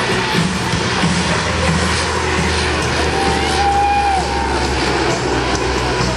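Lockheed C-130 Hercules with four turboprop engines passing low and pulling up into a climb, its propellers giving a deep steady drone. Music and crowd noise are heard along with it.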